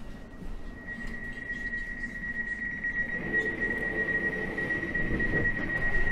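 Door-closing warning tone on a Class 345 train standing at a platform: one steady high-pitched tone held for about six seconds and growing louder, cut off as the doors shut with a thud at the very end.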